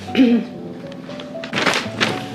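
A single cough near the end, the loudest sound, over soft background music with a steady melody; a brief voiced sound comes just after the start.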